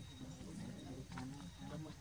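Indistinct low human voices talking in the background, no words clear.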